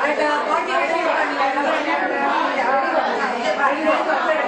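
Many voices at once, mostly women's, overlapping steadily in a large room.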